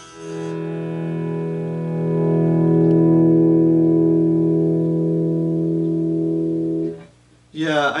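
Fender Telecaster electric guitar through an amplifier: one chord is struck and left ringing while the volume knob is turned up, so it swells louder about two seconds in, then it is muted abruptly near the end. This is a test of the newly fitted audio-taper volume pot, whose sweep now feels like a more gradual push from 5 to 10.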